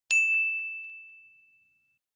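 A bell-like ding sound effect, struck once just after the start and ringing on one clear tone that fades away over about a second and a half. It is the notification-bell chime of an animated subscribe button.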